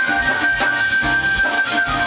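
Live Brazilian jazz-funk band playing, with keyboards over a bass line. One high note is held for about two seconds over the band.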